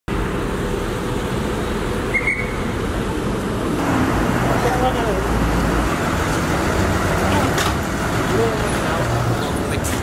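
City street ambience: steady traffic noise from passing vehicles, with people's voices faint in the background. A short high squeak sounds about two seconds in.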